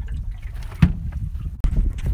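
Wind rumbling on the microphone, with one sharp knock a little under a second in, as a catfish is put away in the cooler of an aluminium jon boat.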